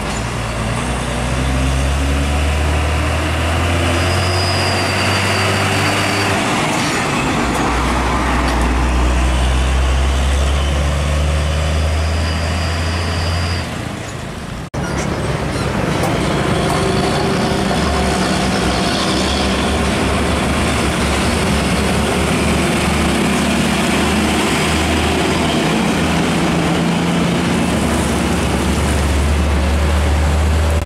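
Diesel engine of a loaded Hino 500 truck pulling a trailer, running hard as it drives off, with the engine note breaking off about six seconds in and picking up again at a lower pitch, like a gear change. Partway through, the sound switches to a second Hino 500 rig with its engine running steadily, and a faint high whistle comes and goes.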